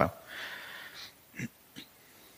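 A man's breath drawn in close to the microphone just after a spoken word, a soft hiss lasting under a second, followed by two faint short sounds.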